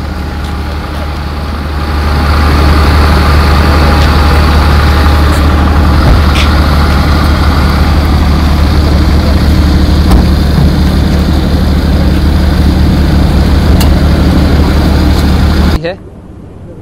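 A vehicle engine idling close by, a loud steady low rumble that grows louder about two seconds in, with people talking in the background.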